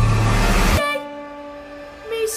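Trailer soundtrack: a loud rising swell breaks off abruptly just under a second in. A quieter held chord of several steady, horn-like tones follows.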